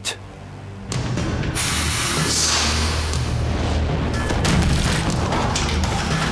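Compressed-air-driven steel claw fired at blocks of ballistic gelatin: a sudden blast about a second in, then a long rush of noise with a low rumble under it, with music underneath.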